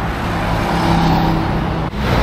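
Heavy traffic on a wide multi-lane city road: cars and motorbikes passing in a steady wash of engine and tyre noise, with an engine hum standing out in the middle.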